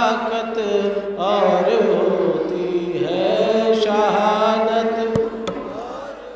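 A man's voice chanting a line of Urdu devotional poetry into a microphone in long, drawn-out melodic phrases, each note held and wavering. Two faint clicks near the end.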